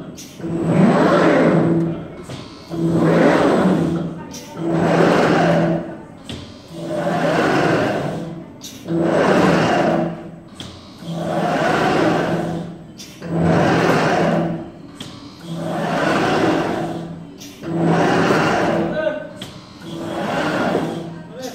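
Glass-cutting machine's gantry shuttling back and forth about every two seconds, each move bringing a steady low motor hum with a rush of noise that swells and fades.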